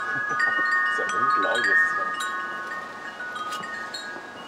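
Wind chime ringing: several tones of different pitch struck one after another, overlapping and ringing on.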